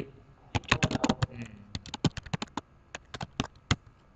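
Typing on a computer keyboard: a quick, uneven run of key clicks that stops about three and a half seconds in.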